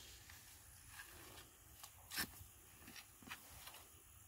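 Near silence, broken by a few faint short knocks and rustles; the clearest knock comes about two seconds in.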